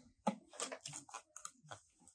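Soft, scattered rustles and light clicks of paper and cardboard packaging being handled.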